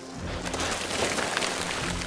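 A noisy, rushing sound effect with fine crackle swells up and eases off over soft background music.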